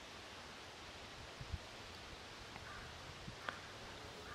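Faint, steady outdoor background hiss in a grassy field, with a few soft clicks a second or so in and again near the end.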